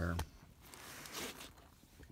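Quiet rustle of an open nylon first aid kit pouch being handled, with a short zipper-like rasp about a second in.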